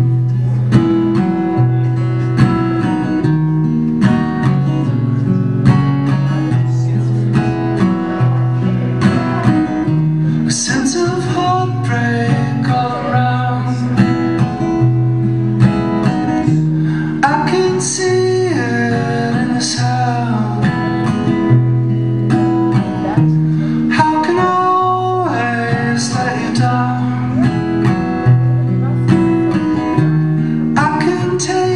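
Live acoustic guitar strumming a steady, repeating pattern as the opening of a song. A higher melody line comes in over it about ten seconds in.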